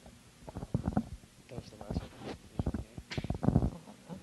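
A man laughing: a quick run of short chuckles that begins about half a second in and grows louder near the end.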